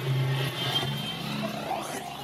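Several motorcycle engines running together as a convoy of motorbikes and a truck rides past, making a steady low drone.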